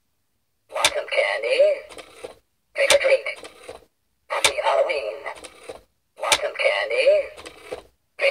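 Animated skeleton-hand Halloween candy bowl triggered again and again, playing its recorded voice clip from a small built-in speaker: four short, matching bursts, each starting with a click.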